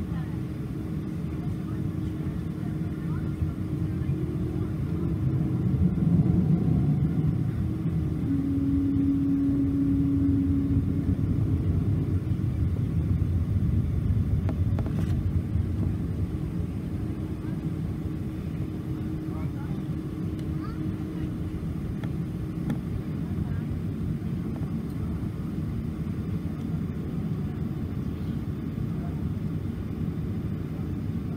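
Low, steady rumble inside the cabin of a Boeing 777-200 taxiing after landing. A faint steady hum runs through it, a brief higher tone sounds from about eight to eleven seconds in, and the rumble swells between about four and twelve seconds.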